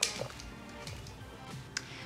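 Soft background music, with two light clicks of the mixing utensils against the glass bowl of seasoned cauliflower, one at the start and one near the end.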